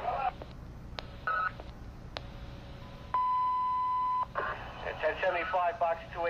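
Radio scanner traffic: short, clipped voice transmissions broken by sharp clicks, then a steady beep held for about a second, followed by a voice coming through the radio.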